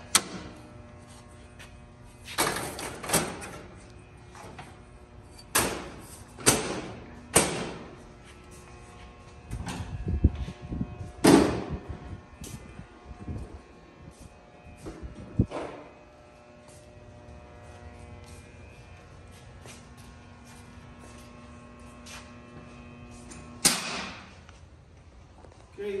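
Energized power distribution unit humming steadily, a low electrical hum with many overtones. Over it come scattered sharp knocks and thuds, a cluster in the first half and a loud one near the end.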